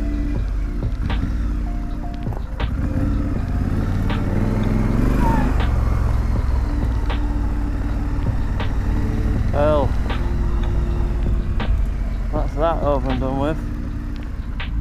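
2017 Triumph Street Scrambler's parallel-twin engine running at low speed as the bike rolls along, with background music over it.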